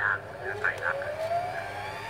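Brother Soiree 575 sewing machine motor speeding up as it starts winding a bobbin: a whine that rises steadily in pitch from about half a second in.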